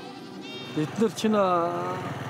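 Goats and sheep of a herd bleating: a short call about half a second in, then a longer, quavering bleat through the second half.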